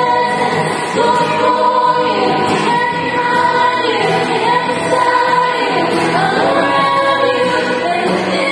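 A group of female voices singing a slow worship song in harmony, the lead voice holding long notes, accompanied by a strummed acoustic guitar.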